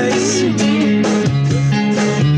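Stratocaster-style electric guitar strummed in a rock song, with a full band track and a gliding vocal line behind it. It is recorded by a camera's microphone in a small room, so the sound is thin.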